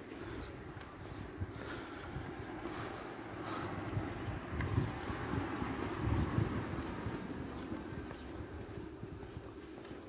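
Footsteps of a person walking on a paved pavement, faint and irregular, over a steady low outdoor rumble.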